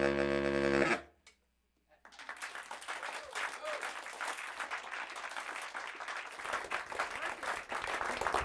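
A baritone saxophone holds a final low note that stops about a second in. After a short silence, an audience applauds.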